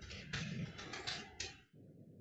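Computer keyboard typing: a quick run of keystrokes entering a terminal command, stopping about a second and a half in, followed by a faint steady hum.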